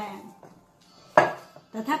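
A glass mixing bowl knocked by hands kneading dough in it: one sharp knock about a second in, with a short ring after it.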